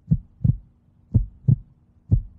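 Heartbeat sound effect: deep double thumps, lub-dub, one pair about every second, twice here, laid on as a suspense cue during a decision countdown.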